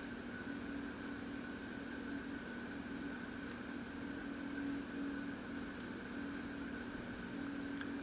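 Steady background hum: room noise with a constant low tone and a fainter higher one, and no clear sound from the mask being peeled.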